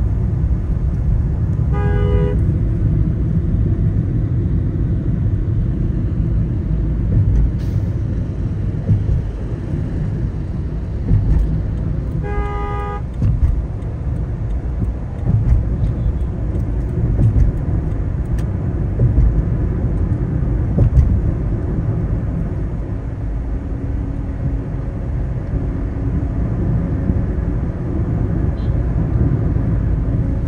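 Steady road and engine noise of a car being driven along a busy road, with two short vehicle horn honks: one about two seconds in and a slightly longer one about twelve seconds in.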